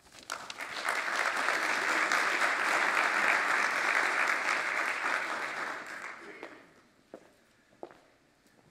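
Audience applauding a speaker's introduction. It builds up within the first second, holds steady, and dies away about six to seven seconds in, followed by a couple of faint knocks.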